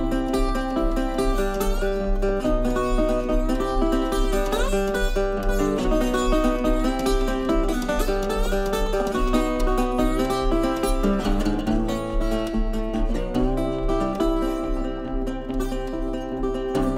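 Wood-bodied resonator guitar fingerpicked solo in an instrumental break: a steady thumbed bass under a run of plucked melody notes, with a few bent notes.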